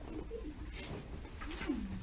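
A monk's voice in slow, drawn-out syllables, the longest one near the end sliding up and then down in pitch.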